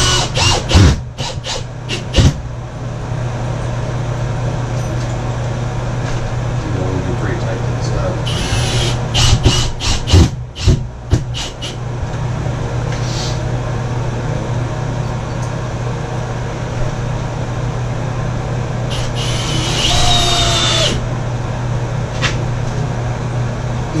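A cordless drill or screw gun runs in two short spells, about eight seconds in and again about twenty seconds in, the second winding down with a falling whine. It is heard over a steady low hum, with knocks and bumps as the bathtub is worked into place on its mortar bed.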